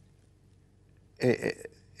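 Near silence for about a second, then a short voiced sound from a man, lasting about half a second.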